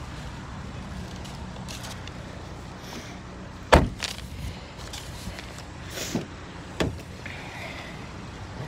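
The 2017 Chevrolet Equinox's car door shuts with one sharp thump a little under four seconds in. A couple of lighter latch clicks follow around two to three seconds later as a door is opened, over a steady low hum.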